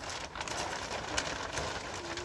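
Large clear plastic sheet rustling and crackling as it is pulled and spread over a block wall, with a dense run of small crinkles that starts suddenly.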